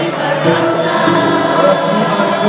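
Live Arabic song: sung melody over a large orchestral ensemble, with several voices singing together.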